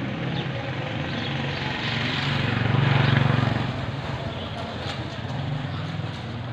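A motor engine passing out of sight, its low steady hum growing louder to a peak about halfway through and then fading.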